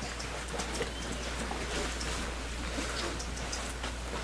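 Many faint, scattered small clicks and rustles from a group of children sliding the beads back on their rekenrek abacus boards to clear them.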